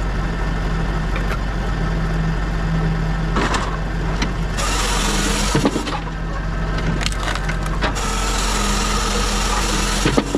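Pilkemaster firewood processor running with a steady drone. Its saw cuts through a log twice, about halfway through and again near the end, amid knocks and cracks as wood is split and the pieces tumble down the chute.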